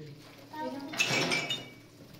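A voice speaking briefly, for about a second beginning half a second in, in a small tiled room.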